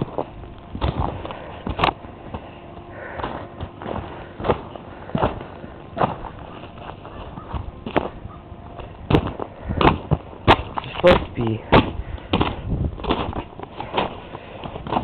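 Footsteps on ice-crusted snow: a run of sharp crunches at about one step a second, coming closer together after about nine seconds.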